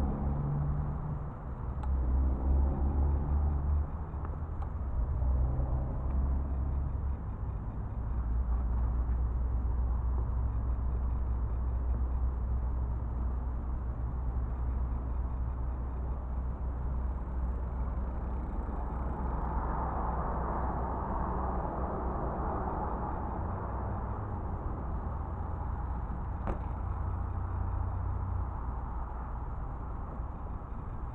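Steady low outdoor rumble with no riding sounds, swelling about two-thirds of the way through, with one short click near the end.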